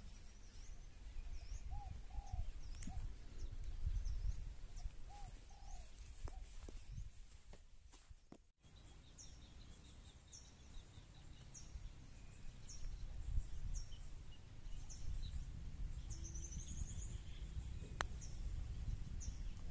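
Outdoor ambience of birds calling. In the second half a bird repeats a short high chirp about once a second, over a low rumble of wind on the microphone.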